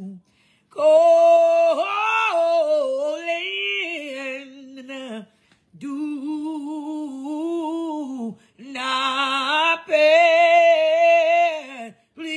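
A woman singing gospel a cappella, without words, in three long phrases of held notes with vibrato.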